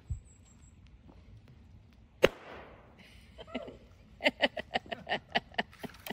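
A length of bamboo heated across a campfire bursts with one loud, sharp pop about two seconds in, followed by a brief fading hiss: steam and air trapped in a sealed bamboo segment splitting it open.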